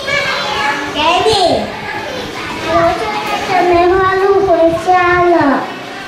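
Young children's voices, unclear speech, with a long drawn-out vocal stretch in the second half that ends shortly before the close.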